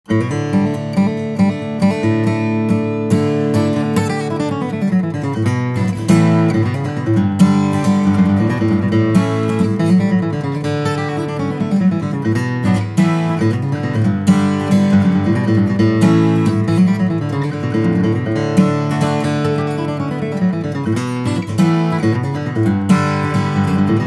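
Santa Cruz 1934 D dreadnought acoustic guitar, with Brazilian rosewood back and sides and an Adirondack spruce top, played solo: a quick picked melody of single notes mixed with chords, starting right at the beginning.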